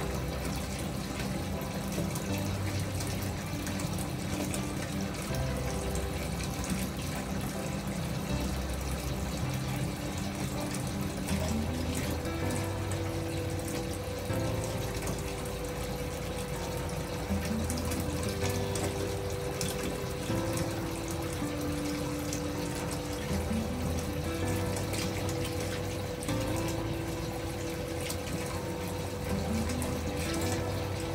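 Bathtub spout running at full pressure into a partly filled tub: a steady rush of water with no let-up, under gentle background music with long held notes.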